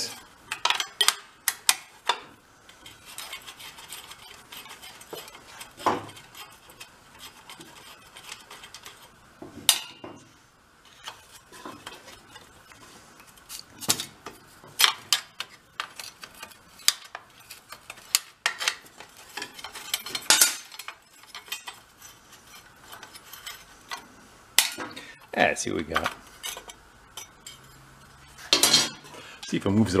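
A small metal wrench clinking and tapping against the bolts and steel brake cover of a VéloSolex moped's front brake as the cover is worked loose: irregular metallic clicks and clinks, a few sharper than the rest.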